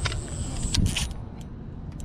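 Handling noise from a fishing rod being grabbed up off concrete to set the hook, over wind rumble on the microphone. A thin high whine cuts off under a second in, followed by a couple of sharp clicks about a second in.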